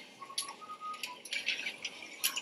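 Premade-bag filling and packing machine running, its mechanism giving irregular clicks and short clatters, with a few brief squeaky tones in the first second.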